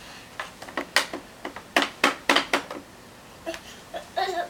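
A quick run of sharp plastic clicks and taps, about ten over two seconds, from a baby's hand on the toy steering panel of a plastic baby walker.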